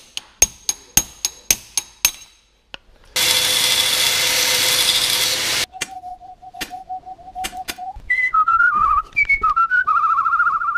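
A run of about eight light clicks in the first two seconds. Then a loud hissing rush of noise lasting about two and a half seconds, cut off suddenly. After that a person whistles, first one held note, then a wavering, higher tune.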